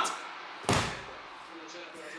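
A single heavy thump about two-thirds of a second in, a man dropping back hard into a padded gaming chair, with a short dying ring after it.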